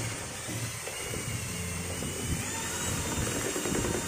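Cordless drill running steadily with a whine, its bit stirring a dark cement-like waterproofing mix in a small plastic container.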